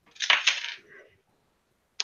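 A short clatter of small hard objects being handled as a pistol is picked up from a desk, lasting about half a second, with a faint rustle just after.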